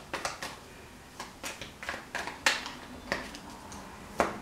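A deck of oracle cards being handled and shuffled: a string of irregular soft clicks and snaps, the sharpest about two and a half seconds in.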